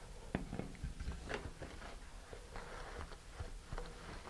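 Handling noise of hands moving a plastic model rocket nose cone and body tube and a paper towel: a scattering of soft clicks and small taps, with a brief rustle about two-thirds of the way through.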